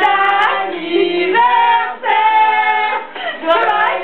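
High young voices singing a tune together, holding long notes that step from one pitch to the next, with two short breaks between phrases.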